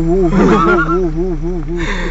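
A man's singing voice holding a long wordless note whose pitch wavers up and down about four to five times a second, on an "oo" with pursed lips. A second voice cuts across it briefly about half a second in.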